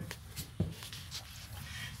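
Faint handling noise from a handheld camera being moved: a few soft knocks and rustles over a low steady hum.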